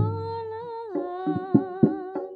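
Jaranan accompaniment music: a long held, wavering melodic note, from a voice or reed horn, that steps down in pitch about a second in, with drum strokes coming back in near the end.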